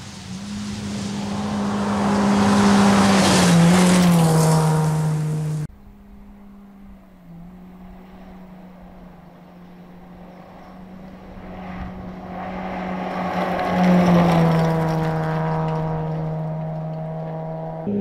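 Rally car's engine running hard at steady high revs on a gravel stage, growing louder as it approaches, with a short dip in pitch at its loudest. The sound is cut off abruptly about six seconds in. It then rises again from far off to a second peak a couple of seconds before the end, its note again dipping briefly as it passes.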